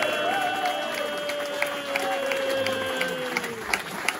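Audience applauding and cheering while an electric guitar holds one sustained note that sags in pitch and cuts off near the end.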